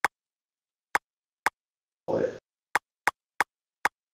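Seven short, sharp clicks at irregular intervals as keys are pressed on Quill's virtual keyboard in VR, typing a layer name. A brief murmur of a voice comes a little over halfway through.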